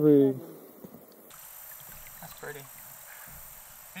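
A man speaking briefly, then quiet outdoor background: a faint steady high hiss with a few faint voice sounds.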